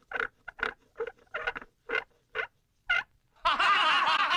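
A wooden cart wheel squeaking as it turns: about ten short squeaks, irregularly spaced a few tenths of a second apart. About three and a half seconds in, a crowd bursts into laughter, which is the loudest sound.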